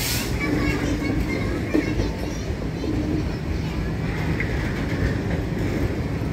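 Indian Railways covered freight wagons rolling past close by: a steady, loud rumble of steel wheels on the rails, with a few short clacks.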